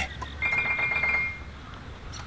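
A short, high trilling sound effect: a rapid warble on one pitch lasting about a second, starting about half a second in.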